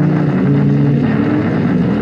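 Harsh noise rock recording: a loud, unbroken wall of distorted sound, with low tones that shift in pitch every fraction of a second and no clear beat.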